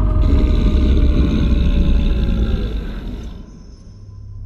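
Sound-effect beast howl trailing slowly down in pitch over a deep rumbling drone. Both fade out about three seconds in.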